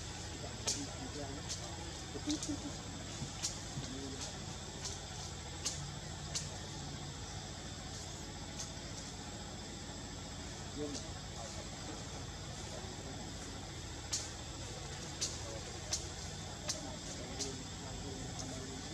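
Outdoor background noise: a low steady rumble with faint, indistinct voices, a thin high steady tone, and sharp ticks in runs of about one a second, sparser in the middle.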